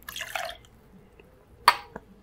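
Red vermouth poured from a bottle into a metal jigger, a short trickle in the first half second. Then a single sharp clink near the end as the metal jigger is set down on the glass tabletop.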